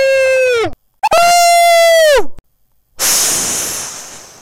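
A looped vocal "woo" sample, held high and steady, then dropping in pitch at its end, heard twice in a row. About three seconds in, a sudden loud hissing burst of noise begins and fades away.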